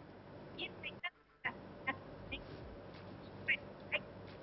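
A voice breaking up over a failing video-call connection: scattered short, high chirping fragments instead of words, with a brief total audio dropout about a second in.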